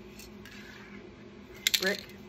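A metal Montana Gold spray paint can handled in the hand, giving two quick sharp metallic clicks near the end over a faint steady hum.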